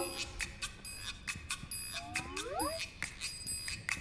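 Light background music of quick bell-like tinkling ticks, about four a second, with a short rising sliding tone about two seconds in.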